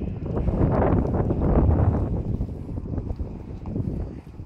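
Wind buffeting the phone's microphone in gusts, a low rumbling rush that swells about one and a half to two seconds in and then eases.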